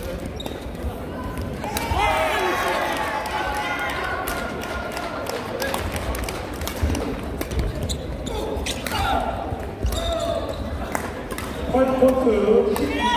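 Badminton hall sound: sharp clicks of rackets hitting shuttlecocks and shoes on the wooden court floor from several courts, with people's voices about two seconds in and again near ten seconds, in a large gym.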